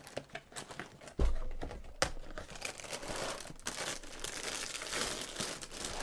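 Cereal box being opened, its cardboard flaps torn open and the plastic inner bag crinkling as it is pulled open. There is a thump about a second in, then several seconds of dense rustling and crackling.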